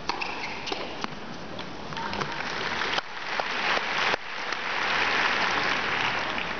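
A tennis ball struck on the serve, then a few sharp racket hits in a short rally. After that a large arena crowd applauds the point, swelling to its loudest about five seconds in and easing near the end.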